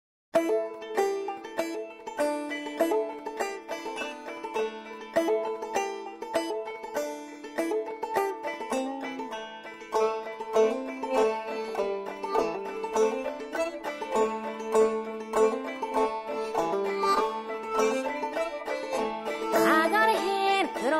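Old-time duet of clawhammer-style open-back banjo in Mountain Minor tuning and a harmonica retuned to "Easy 3rd", playing a brisk instrumental tune: quick plucked banjo notes with sustained harmonica notes beneath them.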